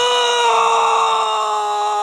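A man screaming in one long, loud, high-pitched cry held at a steady, slowly sagging pitch.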